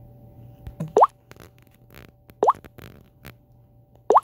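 Two short rising 'plop' sounds from a smartphone's touch feedback as the screen is tapped, about a second in and again a second and a half later, with a few faint clicks and a low steady hum between them.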